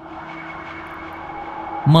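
A steady rushing, wind-like whoosh that swells slowly, over a faint steady hum from the story reading's ambient background track. A man's voice starts speaking at the very end.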